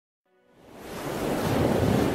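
A swell of ocean surf noise rising out of silence and building to a peak near the end, over soft sustained music chords.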